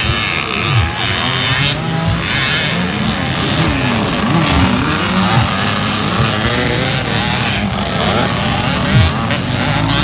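Several dirt bike engines revving over one another, their pitch rising and falling as the riders work the throttle.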